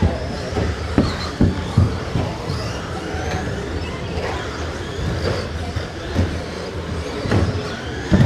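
Electric RC stock trucks racing on an indoor carpet track: motors whining and tyres rumbling steadily, with a few sharp knocks about a second in and again near the end.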